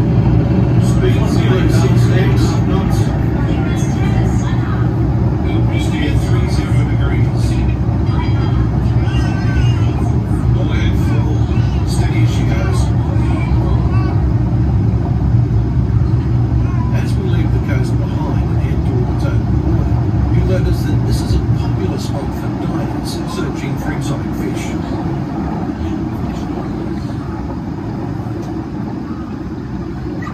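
Steady low rumble and rushing of bubbles streaming past a submarine ride's porthole as it dives, heard inside the cabin, with passengers' voices over it. The rumble eases off a little past two-thirds of the way through as the bubbles thin.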